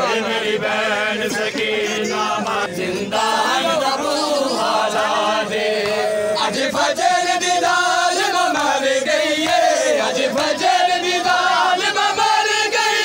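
A crowd of men chanting a noha, a Shia lament, together in unison, growing fuller from about halfway through.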